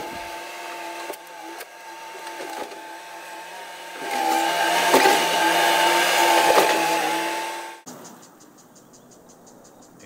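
Bobcat compact track loader's diesel engine running with a steady whine. It gets louder about four seconds in as the bucket pushes debris and soil into the pool, with a few knocks and scraping. It cuts off suddenly near the end to a quieter hiss with fast, even ticking from a lawn sprinkler.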